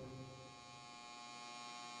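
Faint, steady electronic hum made up of many even buzzing tones, swelling slightly toward the end.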